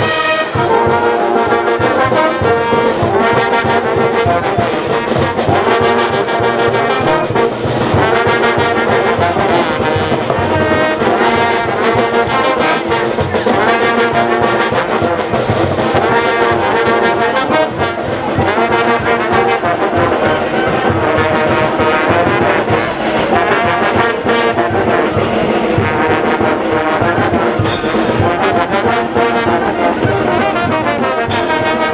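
Brass band playing dance music, with trumpets and trombones over a steady beat.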